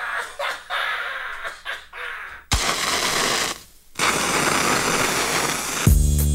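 A lighter struck several times, with short clicks and crackles. From about two and a half seconds in comes a loud, steady hiss that stops briefly and then returns. A hip hop beat kicks in at the very end.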